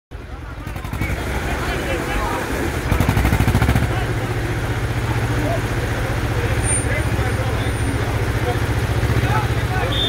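Diesel engines of an Ursus C-335 and an IMT 533 De Luxe tractor idling with a steady low, rapidly pulsing rumble that rises briefly about three seconds in. Crowd chatter runs under it.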